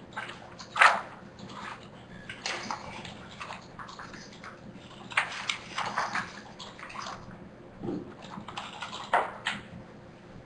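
Typing on a computer keyboard: irregular keystroke clicks, with louder clacks about a second in and near the end.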